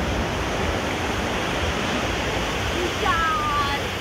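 Surf washing onto a sandy beach, a steady rushing noise, with voices in the background. About three seconds in there is a brief high call that falls in pitch.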